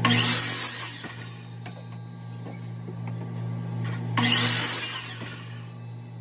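Power miter saw crosscutting 1x6 pine boards to length: two loud cuts about four seconds apart, over a steady hum.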